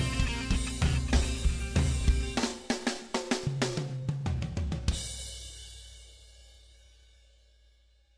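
Band music with drum kit coming to its end: a run of quick drum hits leads to a final hit about five seconds in, after which the last chord rings on and fades out.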